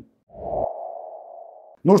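Sonar-like electronic ping tone with a short low rumble under its start, fading over about a second and then cut off suddenly.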